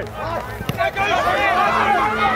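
Several voices shouting over one another from rugby players and sideline spectators during play, with no single voice standing out.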